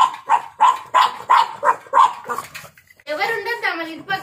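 A pug barking rapidly and sharply, about three barks a second, stopping about two and a half seconds in.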